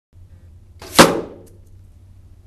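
An arrow tipped with a Carbon Express F15 fixed-blade broadhead hits a ballistic gelatin target backed by plywood: a short whoosh as it flies in, then one sharp, loud impact about a second in that dies away quickly.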